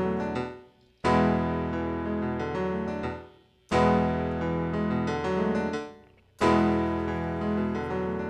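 Electric keyboard playing a slow song intro of held chords. A new chord is struck about every two and a half seconds, three in all, and each one fades almost to silence before the next.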